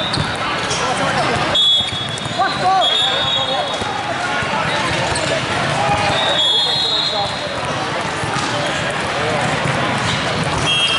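Busy volleyball hall ambience: continuous chatter of many players and spectators, with volleyballs being hit and bouncing on the courts. Several short, shrill high tones, typical of referee whistles or shoe squeaks on the sport court, cut through about a second and a half in, about three seconds in, and again about six and a half seconds in.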